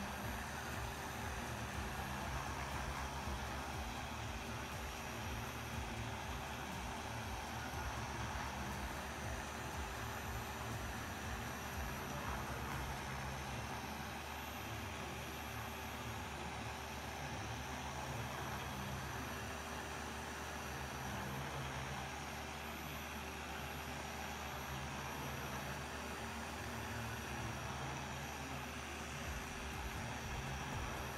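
Dual-action polisher running steadily as it is moved in criss-cross passes over a painted car panel, buffing coarse cutting compound over an extended working time.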